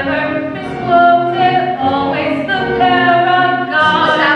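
A woman singing a musical-theatre song in long held notes, with a choir of voices behind her.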